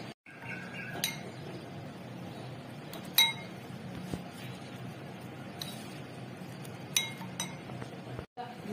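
Metal spoon clinking against a glass bowl while stirring flour, sugar and water into batter. There are about five sharp, ringing clinks spread through the stirring, the loudest about three seconds in.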